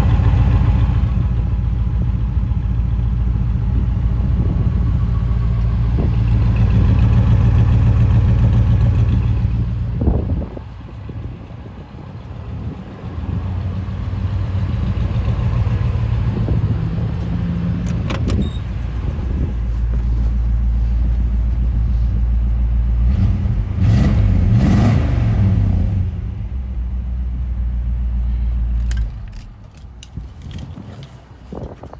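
The Studebaker's 305 cubic-inch V8 idling steadily, heard through its exhaust. It is briefly quieter about a third of the way through and fades near the end.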